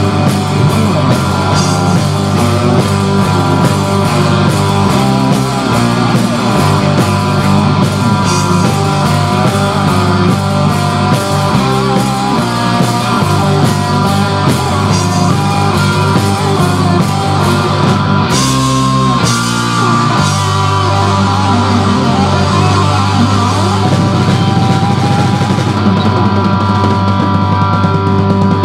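Live rock band playing an instrumental break: electric guitars over a drum kit, loud and steady.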